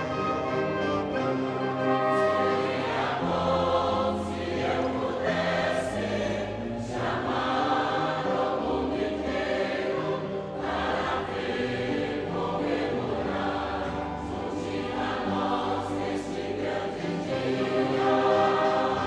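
Church choir singing a hymn in long, held notes.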